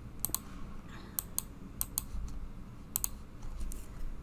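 Stylus tapping and clicking on a tablet screen while writing: about eight sharp, irregular clicks, some in quick pairs.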